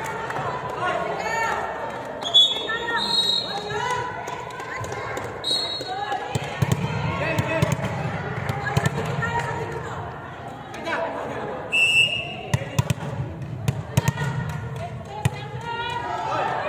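Players' voices and chatter in a large gymnasium, with a volleyball bouncing sharply on the court floor several times in the second half.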